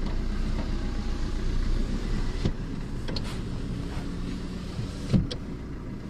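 Car engine running, heard from inside the cabin as the car pulls away, with a faint click about halfway through and a short thump near the end.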